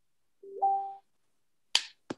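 Zoom's participant-joined chime: a short electronic two-note tone stepping up in pitch, as a new attendee enters the meeting. A sharp click follows near the end.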